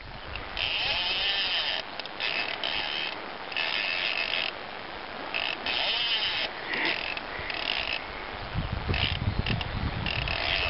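Fly reel's click-pawl drag buzzing in repeated spurts, a fraction of a second to about a second each, as line is pulled against it while a hooked fish is played. A low rumble comes in near the end.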